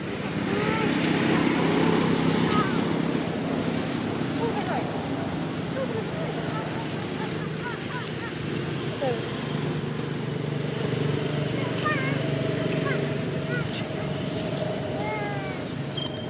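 A steady low motor-vehicle engine hum running throughout, with short high chirps breaking in now and then, a few together near the end.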